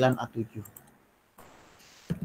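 A few light clicks of computer input, keyboard or mouse, as the user switches terminal windows. The clicks follow the tail of a man's speech, and the sound cuts out completely for a moment about a second in.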